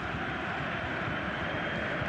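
Steady stadium ambience picked up by a televised football broadcast, an even wash of distant crowd and ground noise with no distinct events.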